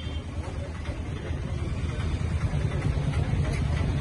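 A motor vehicle engine running with a low steady rumble that slowly grows louder, under the murmur of a street crowd.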